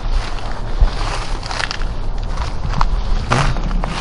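Footsteps on dry, stony forest ground, a few irregular steps, over a steady low rumble.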